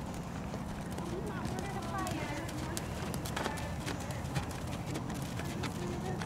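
Horses' hooves on an arena's dirt footing, with scattered sharp strikes, over faint background voices and a steady low hum.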